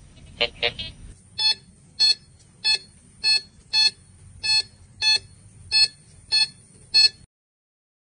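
Metal detector sounding its target signal as the search coil sweeps back and forth over buried metal: ten short, evenly spaced beeps about every 0.6 s, each one a pass of the coil over the target. They follow a couple of shorter blips, and the sound cuts off suddenly near the end.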